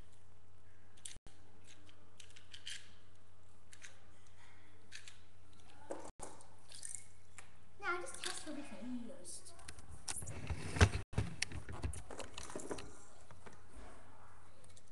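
Scattered clicks and handling knocks of plastic toy parts, with a loud knock about eleven seconds in, over a steady low electrical hum. A short falling vocal sound comes around eight seconds in.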